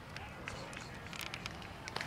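Faint, distant voices and chatter from people around the field, with a few light clicks.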